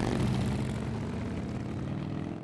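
Several touring motorcycles' engines running as the group rides off, the sound slowly fading.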